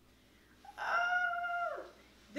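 A woman's voice singing one high held note, which drops off at the end.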